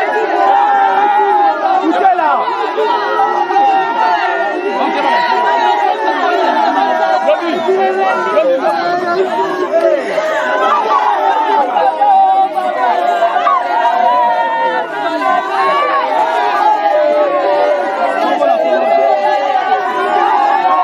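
A dense crowd of mourners, many voices at once, crying and wailing aloud while others talk over them, steady and loud throughout.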